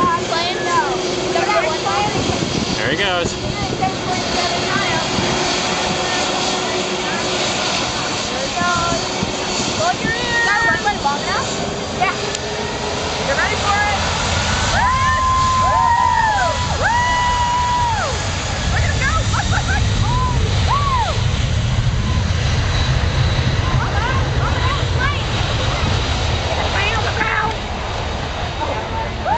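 Boeing 747 jet engines running at low power as the airliner taxis, with a deeper low rumble building about halfway through. Crowd voices and shouts sound over it.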